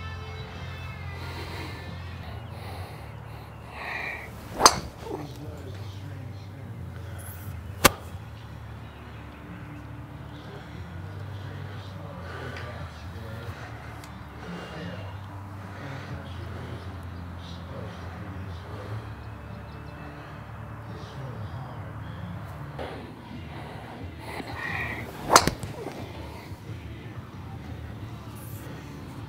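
Two sharp cracks of a driver striking a golf ball, about 21 seconds apart, each just after a brief swish of the swing, with a fainter sharp click in between. A steady low hum runs underneath.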